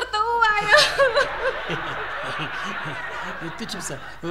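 A woman's wavering, tearful voice for about the first second, then audience laughter from many people, steady until near the end.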